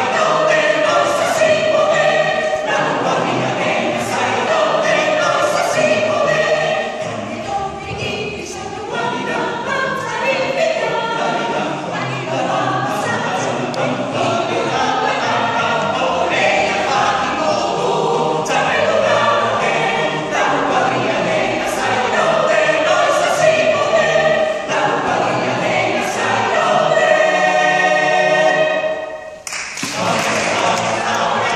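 Mixed choir of men's and women's voices singing in harmony. Near the end they hold one long chord, which breaks off briefly just before the end.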